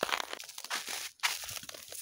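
Footsteps crunching in packed snow: a quick, irregular series of short crunches.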